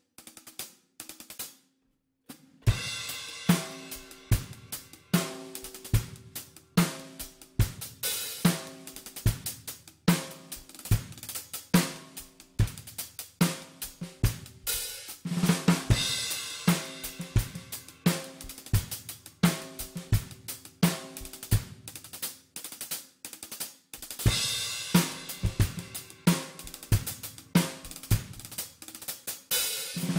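Drum kit played in a groove, with bass drum, snare and hi-hat, and five-stroke rolls worked into it. A few light taps come first, then the groove starts about two and a half seconds in with a cymbal crash, and further crashes come around the middle and again later on.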